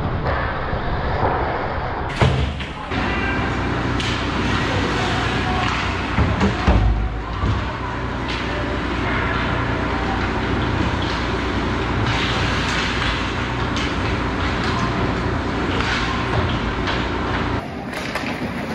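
Ice hockey rink sound during play: a steady wash of skates on ice and arena noise with a low rumble, broken by a couple of sharp thumps of puck or sticks against the boards or net, and voices calling in the background.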